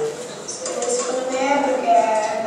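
Children's voices talking indistinctly in a classroom, fairly high-pitched and overlapping, heard through the playback of a recorded video.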